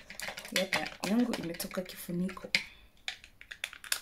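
A woman speaking briefly, then several sharp clicks and light clacks of a plastic compact powder case being picked up and handled.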